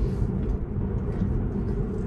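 Steady road and tyre noise inside a moving Tesla electric car's cabin, a low even rumble with no engine note.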